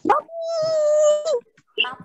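A high-pitched voice held on one steady note for about a second, swooping up into it and dropping away at the end, like a drawn-out call or whine.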